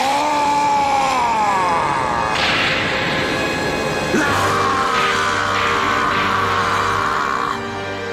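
Synthesized cartoon transformation music and effects: a long falling pitched glide in the first couple of seconds, then, from about four seconds in, a held high chord that slowly sinks over a steady low drone.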